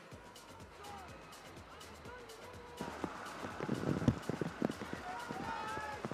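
Background music and a faint distant voice. From about halfway, a louder stretch of noise comes in with several sharp knocks.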